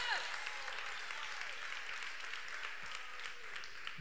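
Congregation applauding steadily, with a few voices calling out that fade in the first half second.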